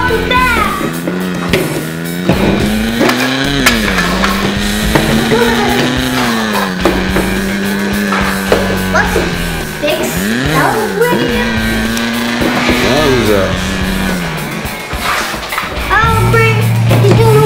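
A child making long, held engine 'vroom' noises with his voice, the pitch rising and falling like a revving monster truck, over background music, with light plastic clicks of toy trucks on the ramp set.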